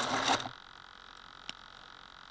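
Hand-handling noise from a foam RC model aircraft gripped right against its onboard camera, a rustling crackle that stops about half a second in. After that only a faint steady hum remains, with one sharp click midway.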